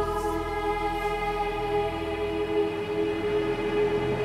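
Background music: a choir holding slow, long sustained chords.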